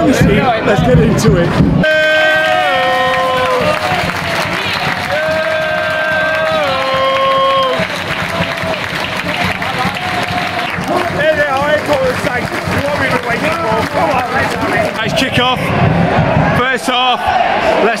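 Football crowd in a stand clapping, cheering and singing as the teams walk out. A tune of long held notes carries over the crowd for several seconds, starting about two seconds in.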